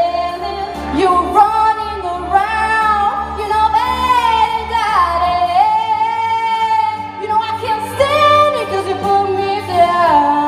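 A woman singing long, sliding notes into a microphone, amplified through the hall's sound system over backing music. The deep bass of the backing drops out about halfway through.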